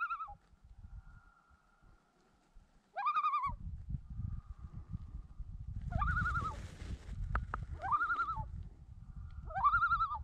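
Common loon calling repeatedly: five arched, wavering notes, one every two to three seconds. A low rumble runs underneath from about three seconds in.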